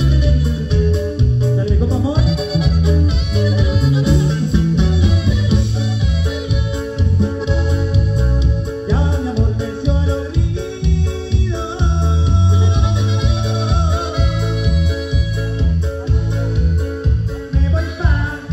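Live band music played loud through a club sound system: heavy bass, guitars and drums with a steady dance beat.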